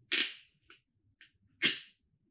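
Stiff protective paper wrapping being pulled open by hand: two sharp crackles, the second louder, with faint rustles between.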